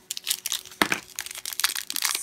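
A small plastic blind-bag wrapper crinkling in the hands as it is handled to be opened, in irregular crackles.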